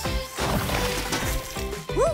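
Cartoon background music, with a hissing steam sound effect for about the first second and a half as the oven made of snow melts around the hot tray.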